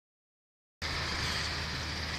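The recording cuts in after a moment of dead silence to a steady low hum with a hiss over it, like a car engine idling close by.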